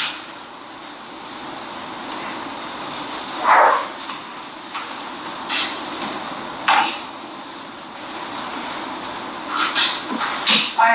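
Steady hiss of room noise, with a few short, breathy sniffles from a woman who has stopped mid-statement, tearful. They come about three and a half seconds in, twice more over the next few seconds, and once near the end.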